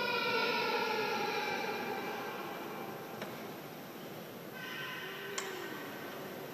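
A bell struck as the host is raised at the consecration, its ringing tone fading over about two seconds, then struck again more softly about four and a half seconds in.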